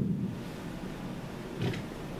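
A pause in a man's talk: steady background hiss, with one brief faint vocal sound about one and a half seconds in.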